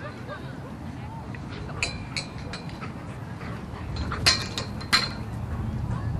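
Outdoor ambience with faint voices, broken by a few sharp clinks, the two loudest about four and five seconds in.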